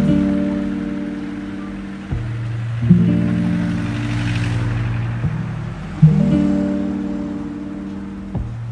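Background music with no singing: guitar chords ringing out, a new chord struck about every three seconds and fading between.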